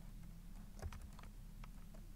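A few faint, scattered computer keyboard keystrokes, with one clearer keystroke a little under a second in.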